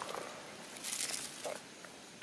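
Faint rustle of dry leaf litter, with a brief scratchy burst about a second in.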